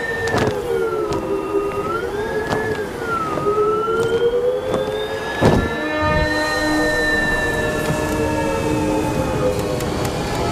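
Background score of held notes that waver slowly in pitch, with new notes entering about six seconds in, over a noisy haze of storm wind. There is a single sharp hit about five and a half seconds in.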